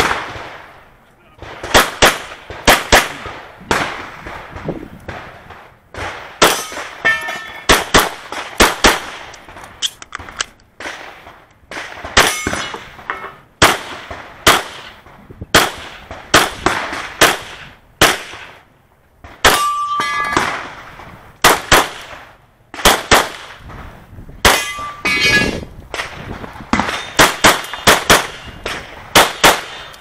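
Smith & Wesson M&P Pro 9mm pistol fired mostly in quick pairs, in strings broken by short pauses for movement and reloads. After some shots there is a brief metallic ring, typical of steel targets being hit.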